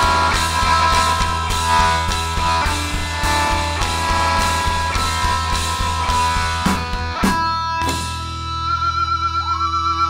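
Live indie rock band with electric guitars, bass and drum kit playing loud and raw, with an even drum pulse. About seven seconds in the band stops on a couple of hard hits, and the guitars ring on as held notes, some bending in pitch.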